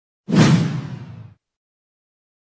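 Whoosh sound effect for an animated logo reveal. It is a single sudden rush with a deep undertone, starting about a quarter second in and fading over about a second before cutting off.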